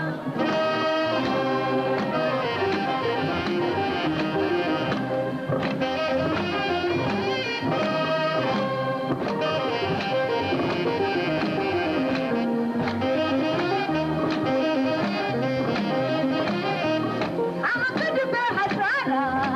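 A live band plays an instrumental passage led by a saxophone and a trumpet, with sustained melodic horn lines over the backing.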